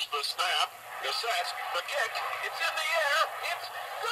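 Mattel Talking Monday Night Football sportscaster voice unit, a small battery-powered record player, playing a play record: a recorded announcer's voice calls the play, thin and tinny with no low end, over a steady noisy background.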